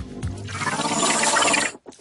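A rush of water-like noise that builds over about a second and cuts off suddenly near the end.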